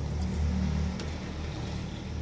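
A low, steady motor-like hum with light metallic clinks about a quarter second in and again about a second in, as a steel bowl tips vegetables into an aluminium cooking pot and touches the ladle.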